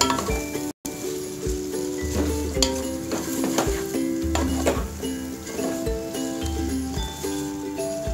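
Background music with held notes and a steady beat. Beneath it, a spatula stirs potato chunks through hot spiced masala in a pot, with a faint sizzle. The sound cuts out briefly just under a second in.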